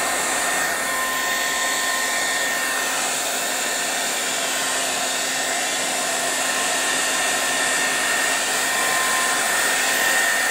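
Handheld craft air dryer running steadily on a low setting: a constant rush of air with a thin, steady whine.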